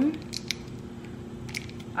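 Caramel sauce being squeezed from a squeeze bottle into a glass, with a few faint clicks.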